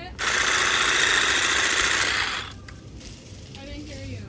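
Ryobi cordless electric hedge trimmer running in a burst of about two seconds as it cuts lavender stems, its reciprocating blades buzzing steadily and then cutting off suddenly.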